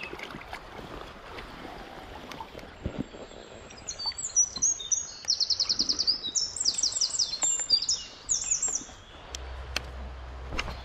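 A songbird singing several quick phrases of rapid, high-pitched repeated notes, from about four seconds in until about nine seconds in. It is the loudest sound here.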